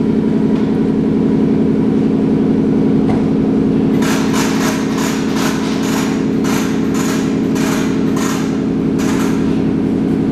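Wheel-spinning machine running steadily with a 2013 Victory Judge front rim turning on it, giving a constant motor hum. This is a spin test for runout. From about four seconds in, a run of light ticks comes roughly three a second for some five seconds, then stops.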